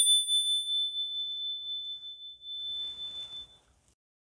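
A small handheld metal chime, struck once with a mallet just before, ringing on with one clear high tone that slowly fades away over about three and a half seconds. A faint rustle of handling comes near the end.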